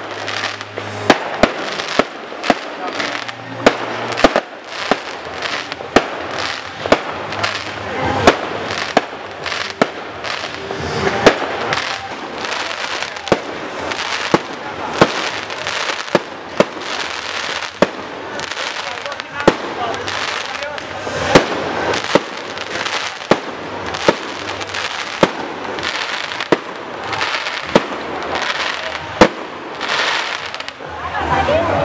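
Fireworks display: aerial shells going off in a rapid, irregular string of loud bangs, about one or two a second, with continuous crackling between them.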